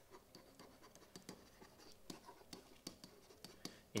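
Faint scratching and light tapping of a stylus handwriting on a pen-input surface, in short irregular strokes.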